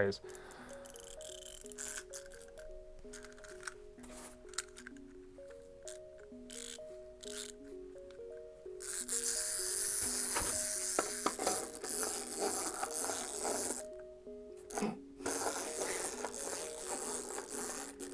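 Soft background music with a simple stepping melody. Over it come scattered clicks from a plastic wind-up toy being wound and handled. From about halfway there is a louder scraping, rattling noise as the toy is handled and set down to walk on a piece of cardboard.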